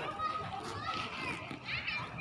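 Children playing and people talking in the background, with overlapping voices and no clear words.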